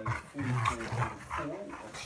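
A yellow Labrador and a pug play-fighting at close quarters, the dogs making short vocal noises, loudest around half a second to a second in, over a television news voice.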